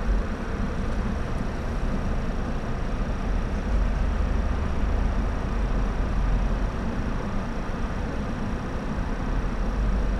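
Car engine idling, a steady low rumble, with a faint steady high-pitched whine above it.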